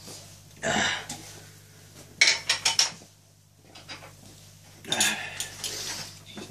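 Clinks and clatter of a glass and bottles being handled on a table, with a quick run of sharp clinks about two seconds in.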